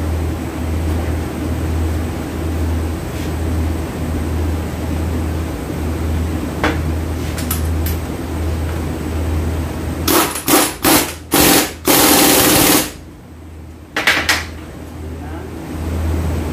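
Impact wrench hammering on the transfer case's output flange nut: several short bursts about ten seconds in, then one longer burst of about a second, and one more short burst a second later.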